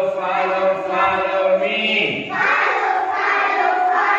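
A group of children chanting an action song together, loudly and without a break, with a man's deeper voice joining in for the first two seconds or so.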